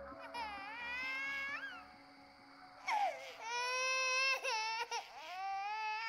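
A baby crying: a short wail that rises at its end, then after a pause of about a second a longer run of cries, broken twice.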